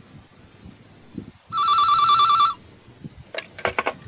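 A telephone ringing: one warbling ring about a second long, the sign of an incoming call. A few short clicks follow near the end.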